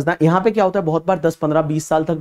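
A man speaking Hindi in a continuous lecture; only speech, no other sound.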